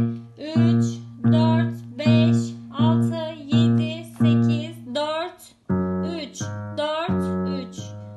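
Yamaha digital piano played left-handed in a slow finger-strengthening exercise: low notes struck one at a time about every 0.7 s, moving to a different set of notes about six seconds in.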